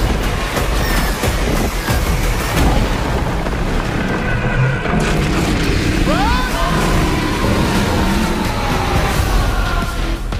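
Movie-trailer sound mix: loud, dense music with deep booms and hits, layered with action sound effects. A few short rising and falling glides come about six seconds in.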